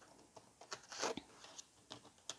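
Tarot cards being gathered up by hand from a spread on a tabletop: faint scattered taps and short slides of card stock, loudest about a second in.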